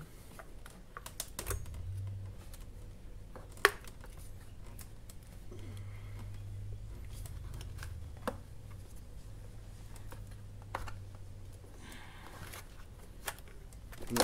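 Scattered small clicks and taps of metal hose clamps and a rubber intake coupler being worked by hand onto a scooter's throttle body, with one sharper click about four seconds in.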